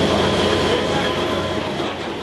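Steady loud rushing noise with a low droning hum underneath, easing slightly toward the end.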